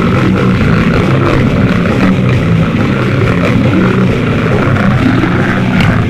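Goregrind recording: a loud, dense wall of heavily distorted, down-tuned guitar and bass grinding through a riff, the low notes shifting about every half second, with a sharp hit just before the end as the next part starts.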